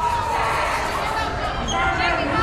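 Mixed voices of spectators and players talking and calling out, echoing in a school gymnasium.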